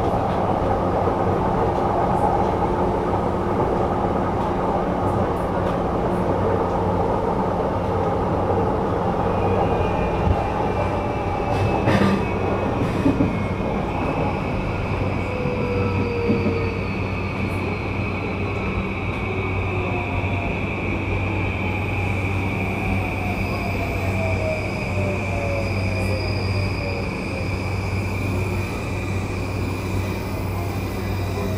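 Inside a JR East E235 series motor car: the train's running rumble, with the traction inverter and motors whining in several tones that slide slowly downward as the train slows on the approach to a station. A steady high whine sits above it from about a third of the way in, and a few clicks from the wheels over the track come just before the halfway point.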